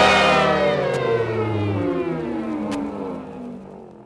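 Final note of a disco record: a loud sustained chord whose pitch slides steadily downward as it fades out, with two faint clicks partway through.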